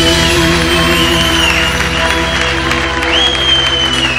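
A live band holds a final sustained chord at the end of a song, with high wavering notes gliding above it, while the audience applauds.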